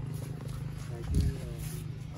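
Faint talking from people standing around, over a steady low hum, with one loud low thump about a second in.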